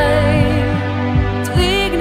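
Slovenian pop song: a female voice sings held notes with vibrato over sustained backing chords and a steady beat.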